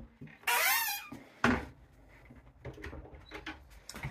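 A wooden cabinet door's hinge squeaks once as the door swings, with a sharp knock about a second and a half in as the door shuts, then a few faint clicks.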